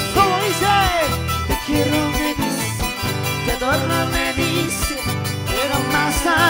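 Live band music with a steady beat, a charango strummed with the band and a melody line with sliding notes on top.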